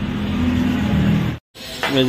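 A motor engine running steadily with a low hum that rises slightly in pitch, then cuts off suddenly about one and a half seconds in.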